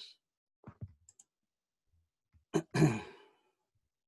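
A person's sigh about two and a half seconds in: a short voiced breath that trails off into a breathy exhale. A few faint clicks come before it, against near quiet.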